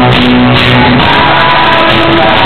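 Loud live rock band: a male lead singer with acoustic and electric guitars playing.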